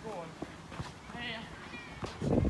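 Faint, distant shouts and calls from players during a handball game: several short pitched calls, one high call a little past the middle, with a couple of short knocks.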